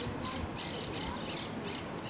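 Outdoor background in a pause of speech: faint high-pitched chirping repeating about three times a second, over a low rumble.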